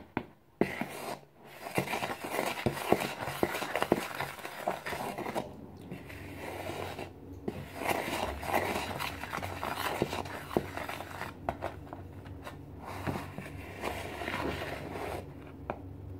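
Wooden spoon stirring dry flour mixture in a plastic mixing bowl: an irregular scraping with small clicks where the spoon knocks the bowl, pausing briefly now and then.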